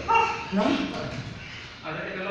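Short, high-pitched vocal yelps and cries, one rising in pitch about half a second in, with a lower, steadier voice starting near the end.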